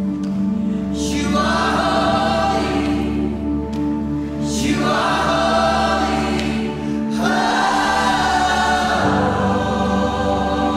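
A worship leader and a congregation singing together in slow, swelling phrases over a steady held chord. The voices rise three times, about a second in, midway through and about seven seconds in.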